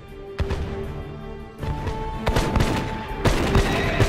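Gunfire sound effects, several sharp shots spread through, over a background music score with held notes.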